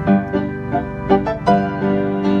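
A freshly tuned grand piano being played: chords and notes struck about three times a second, ringing on between strikes.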